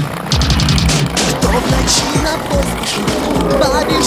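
Skateboard wheels rolling over brick paving, a rough running rattle with repeated knocks as the board crosses the joints, and music playing alongside.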